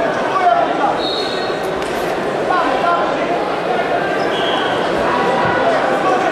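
Arena crowd noise: many voices chattering and shouting at once, echoing in a large hall, with a couple of short high-pitched calls.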